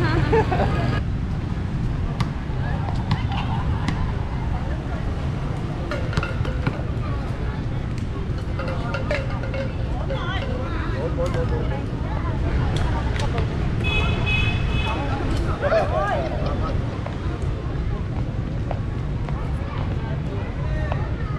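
Wind rumbling on the microphone over outdoor ambience of distant voices and traffic, with a brief horn toot about fourteen seconds in.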